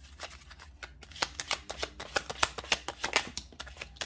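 A deck of oracle cards being shuffled by hand: a quick, uneven run of crisp card flicks and riffles, densest and loudest in the middle.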